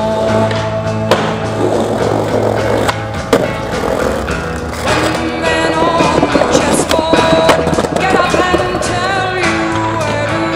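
Skateboard wheels rolling on pavement, with several sharp clacks of the board popping and landing, the loudest about three seconds in, over music.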